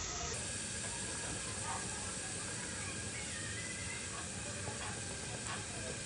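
Diced calabresa sausage and chopped onion sizzling in hot oil in a pressure cooker pot, a steady frying hiss as the sausage is sautéed.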